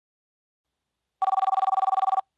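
A telephone ringing: a rapid, evenly warbling two-tone trill that starts a little over a second in.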